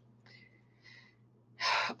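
A woman's short, sharp intake of breath near the end, just before she starts speaking again.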